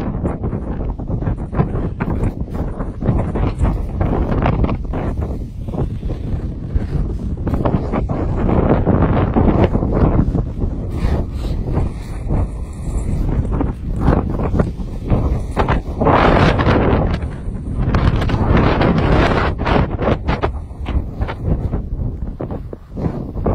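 Wind buffeting the microphone of a camera carried on a downhill ski run, mixed with the hiss and scrape of skis on snow. It comes in uneven gusts and grows louder about a third of the way in and again near the end.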